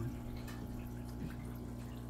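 Aquarium filter water bubbling and trickling steadily, over a steady low hum.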